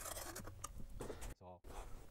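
Faint scratching of a pen marking cardboard around a pump bracket, with light clicks from the plastic bracket being handled and a short silent gap about three-quarters of the way in.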